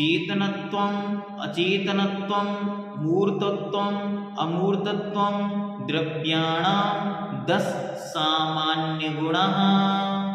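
A man's solo voice chanting a Sanskrit sutra in melodic recitation on a steady reciting tone. The chant comes in short phrases, each opening with an upward slide, about one every one and a half seconds.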